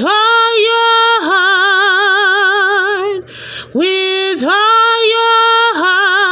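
A woman singing solo and unaccompanied, holding long notes with a wavering vibrato and sliding into them. Two drawn-out phrases are parted by an audible breath about three seconds in.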